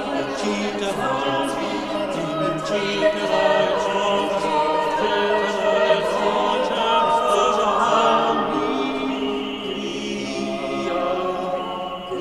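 A small mixed choir of about six men and women singing together in a large stone church.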